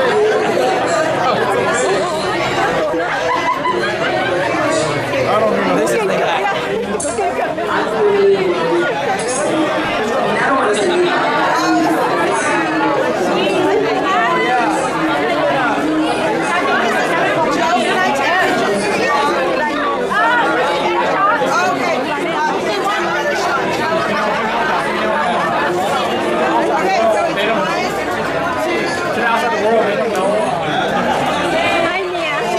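Crowd chatter: many people talking over each other at once, at a steady level.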